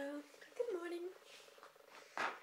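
Two brief wordless voiced sounds from a woman, one right at the start and one about half a second in, over a faint steady buzz.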